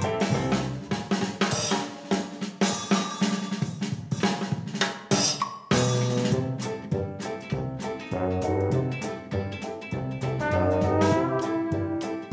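Upbeat background music with a drum kit and brass, breaking off abruptly and restarting about halfway through.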